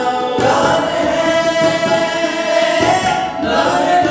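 Male voices singing together, holding one long note for about three seconds, over a harmonium, in a Hindi song. Tabla strokes sound near the start and again near the end.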